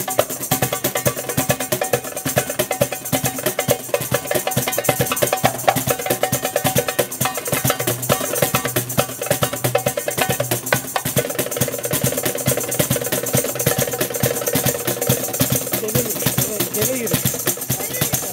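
A darbuka and a cajón played by hand together in a fast, unbroken rhythm: quick, crisp strokes on the goblet drum over the lower strokes of the wooden box drum.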